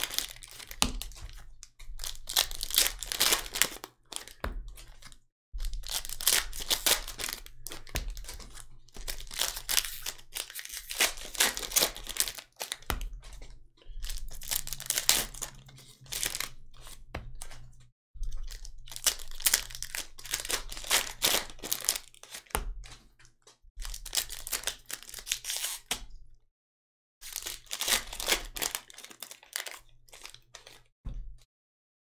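Foil trading-card pack wrappers crinkling and tearing as they are opened and handled by gloved hands, in crackly bursts of a few seconds each with short pauses between.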